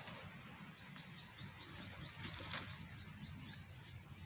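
A bird calling in a rapid series of short, high, down-slurred chirps, about four a second, over steady outdoor background noise. A brief rustle or crackle about two and a half seconds in.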